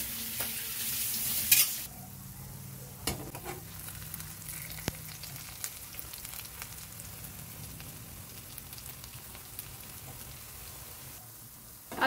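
Besan-coated small fish shallow-frying in oil in a pan on medium flame, sizzling: louder for the first two seconds, then a steadier, quieter crackle with scattered sharp pops.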